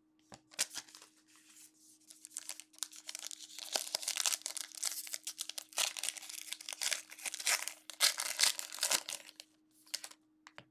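Foil trading-card pack being torn open and crinkled by hand, in irregular bursts of crackling, loudest around six and eight seconds in.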